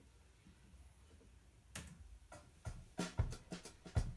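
A drum-kit backing beat starts quietly a little under two seconds in: a run of short hits, kick and snare-like.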